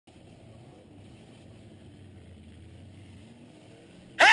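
Demolition derby car's engine running steadily and faintly, heard from inside the cab.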